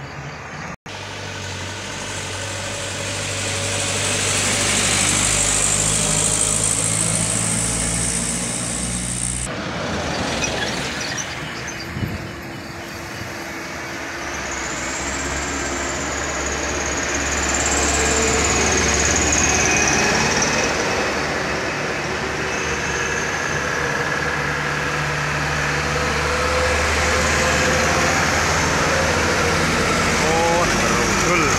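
Diesel engines of loaded sugarcane trucks running as they approach and pass on the road, the sound growing louder in the second half as they come close. A high, wavering whistle rises over the engines partway through.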